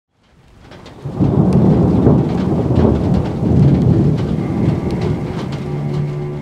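Thunder rumbling loudly over steady rain. It fades in from silence over the first second, then rolls on with scattered sharp crackles.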